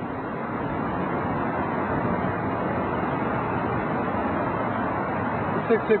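Steady outdoor background noise: an even hiss-like rumble with no distinct events.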